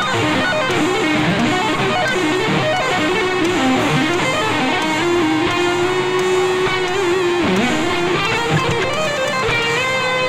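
Electric guitar played solo as improvised lead lines: a run of single notes, then a long held note about five seconds in that dips in pitch and returns about two and a half seconds later before the notes move on.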